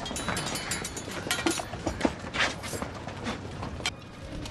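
Many scattered metallic clicks and rattles of soldiers' muskets and bayonets as they are levelled, a dozen or so irregular knocks over a low background.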